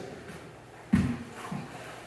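Quiet scuffling of gi cloth and bodies shifting on a martial-arts mat as one grappler moves over another, with a short low thump about a second in.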